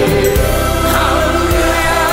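Gospel worship song: voices singing over instrumental backing with a steady bass line and occasional drum hits.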